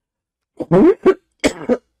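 A person coughing and laughing close to the microphone: a quick run of four short bursts starting about half a second in.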